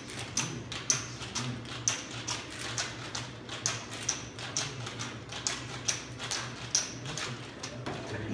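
Ice rattling inside stainless steel cocktail shakers being shaken hard, a rhythmic rattle at about two strokes a second, with several shakers going at once so the strokes overlap.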